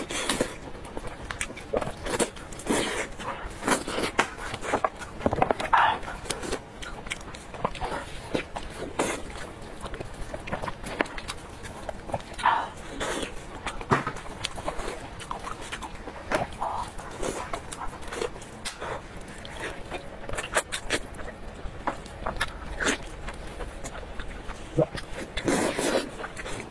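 Close-miked eating of a braised sheep's head: wet chewing and lip smacking, with meat and bone being pulled apart by gloved hands, an irregular run of short clicks and squelches.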